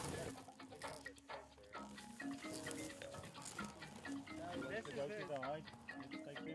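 Faint, indistinct voices over quiet background music; about five seconds in, a quickly wavering, warbling voice-like sound.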